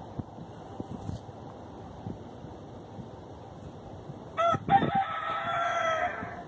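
Rooster crowing: a short note, then one long, slightly falling crow near the end, over faint outdoor background.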